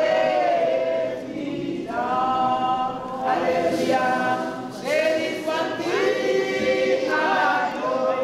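A choir singing, several voices in harmony, in phrases that slide up and down in pitch.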